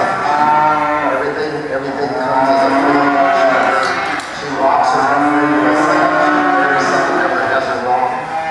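Cattle mooing: two long calls, the second beginning about halfway through, each sliding slightly down in pitch.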